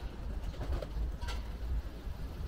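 Two short bird calls, a little over a second apart, over a steady low outdoor rumble.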